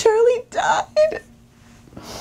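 An adult woman play-acting a child crying: short, high, wavering sobbing cries and a breathy sob in the first second, then quieter.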